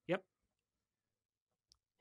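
A short spoken "yep" at the start, then near silence broken only by one faint, brief click near the end.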